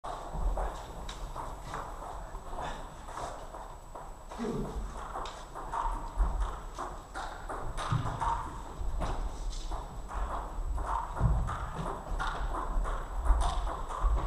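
Kendo sparring: bamboo shinai clacking against each other and against armour, and feet stamping on a wooden floor, in an irregular run of sharp knocks that echo through a large hall. Shouted kiai cries break in now and then, one clearly about four and a half seconds in.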